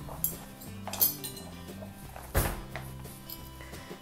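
A serving utensil clinking and knocking against a pot and plate as food is dished up: several short knocks, the loudest a little past the middle, over soft background music.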